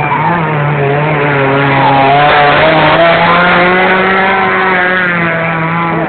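Suzuki Samurai 4x4's engine running at high revs as it drives through a flooded mud pit. The pitch wavers under load, and the engine is loudest about two to three seconds in before easing off.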